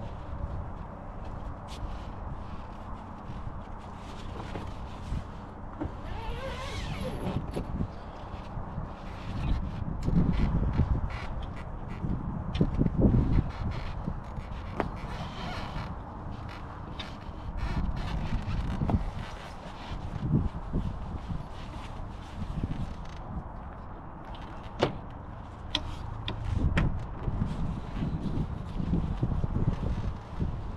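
Hard-shell rooftop tent being closed by hand: fabric walls rustling as they are folded and pushed in, with scattered clicks and knocks from the shell and frame. Wind gusts buffet the microphone several times.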